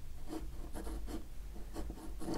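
Fine-tip ink pen scratching across textured watercolour paper in a run of short strokes, several a second, as lines are sketched.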